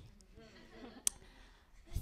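Short quiet pause in a voice heard through a microphone: low room tone with one sharp click about halfway through.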